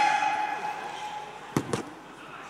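Boxing ring bell struck once to start the first round, a single clear ring that fades over about a second. Near the end come two sharp thuds in quick succession.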